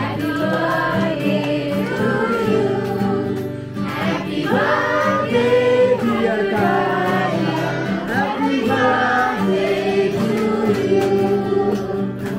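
A birthday song: several voices singing together over a steady musical backing, at an even level throughout.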